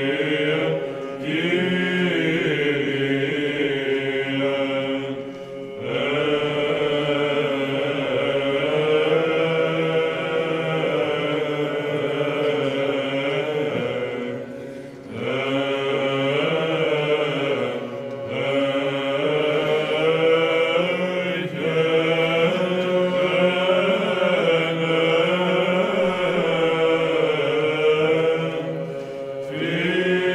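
Male monastic choir singing Byzantine chant: a steady held drone (ison) under a slowly moving, ornamented melodic line, with brief pauses between phrases.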